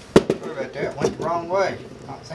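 A single sharp knock just after the start, then a man's voice making a few wordless, pitched sounds, like humming or muttering.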